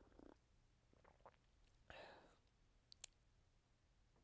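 Near silence with faint sounds of a man drinking from a mug: a soft breathy sound about two seconds in and a single light click near three seconds.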